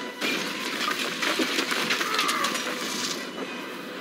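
Action soundtrack from an animated fantasy series: a dense wash of fire and crashing destruction noise with many sharp cracks, easing off a little near the end.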